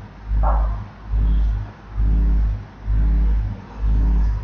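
A low buzzing hum that pulses on and off at an even pace, about three pulses every two seconds, with a brief short sound about half a second in.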